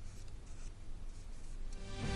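Quiet studio room tone with a low steady hum and a few faint soft sounds, then the news bulletin's headlines theme music cutting in loudly right at the end.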